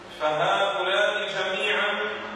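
A man's voice lecturing in Arabic, in a drawn-out, chant-like delivery, starting about a quarter second in after a short pause.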